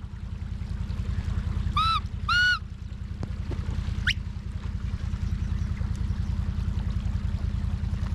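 Can-Am Defender side-by-side's engine running steadily with an even low pulse, under whistled commands to a working sheepdog: two short whistle notes about two seconds in, then a quick rising whistle about four seconds in.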